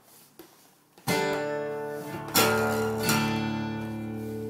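Ibanez copy of a Gibson Hummingbird acoustic guitar in double drop D tuning (DADGBD), strummed on a D chord. After a near-quiet first second it is strummed three times, about a second in, near two and a half seconds and just after three seconds, and the chord rings on between strums. This is the D chord shape played so that the open low D string rattles.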